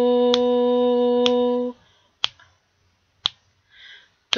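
A voice holds the rhythm syllable "to" on one steady pitch for a whole note and stops a little under two seconds in. A sharp click marks each beat about once a second and carries on through two silent beats of rest. A faint breath comes just before the end.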